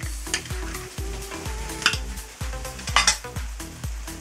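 Cannelloni filling of chopped beef brain, onion and spinach frying in a pan, a hiss under a metal spoon scraping pâté out of a metal dish. Two sharp clinks of the spoon on the metal, a little before 2 s and at 3 s, are the loudest sounds, over background music with a steady beat.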